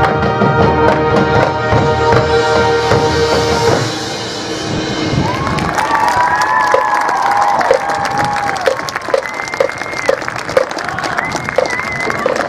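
Marching band's brass and winds holding a loud sustained final chord that cuts off about four seconds in. Crowd applause and cheering follow, with high whoops over the clapping.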